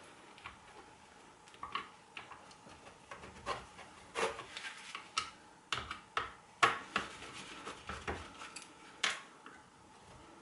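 Hand screwdriver turning screws in an electric shower's plastic housing: irregular small clicks and taps of the tool tip and the plastic parts.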